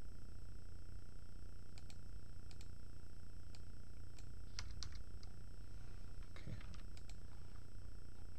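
Steady low electrical hum with a few thin steady high tones, over which come scattered soft clicks from a computer mouse and keyboard, a little busier in the second half.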